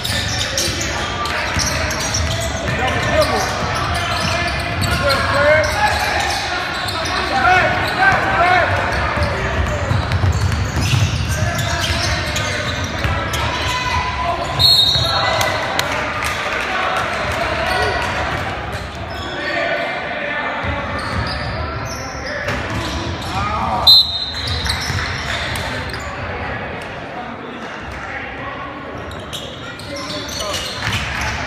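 Indoor basketball game sounds in a large, echoing gym: players and spectators shouting and talking over a basketball dribbling on the hardwood floor. A referee's whistle blows briefly about halfway through and again, sharply and loudest, near the last fifth.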